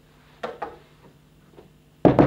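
Two quick, light knocks on wood about half a second in, a quarter second apart, with a fainter tap near the end.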